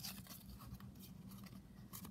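Scissors and paper being handled while excess paper is trimmed off: a short sharp snip right at the start, then faint rustling, over a steady low hum.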